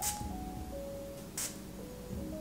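Two short spritzes from a perfume atomizer, one right at the start and another about a second and a half in, over soft background music.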